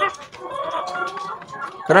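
Caged laying hens clucking, with short scattered calls.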